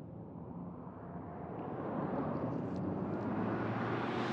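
Low, steady vehicle rumble that grows louder from about a second and a half in.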